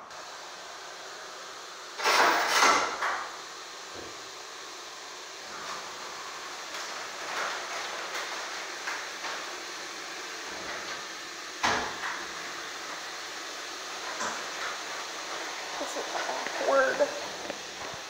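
Washing machine running just after starting its cycle: a steady rushing noise, with a loud clatter about two seconds in and a sharp knock near twelve seconds.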